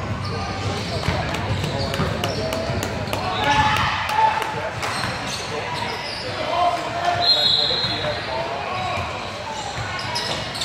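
Basketball bouncing on a hardwood gym floor, a run of quick bounces in the first few seconds, over a constant murmur of spectators' voices echoing in a large gym. A short high-pitched squeak comes about seven seconds in.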